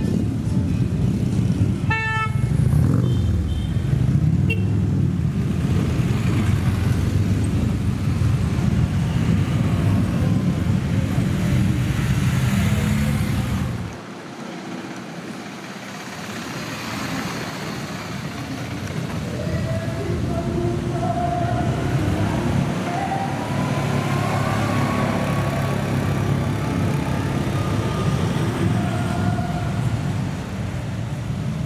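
Motorcycles riding past slowly in a procession, a dense low engine rumble, with a short horn toot about two seconds in. About halfway through the sound drops abruptly to quieter engines and street noise, with a few horn-like tones in the second half.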